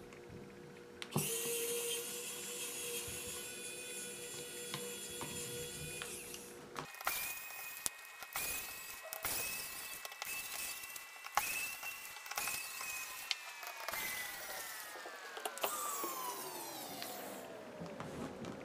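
Small electric precision screwdriver running, taking out the PH00 screws. A steady whine starts suddenly about a second in and stops at about seven seconds, followed by clicks and short bursts. Music plays underneath, with a long falling tone near the end.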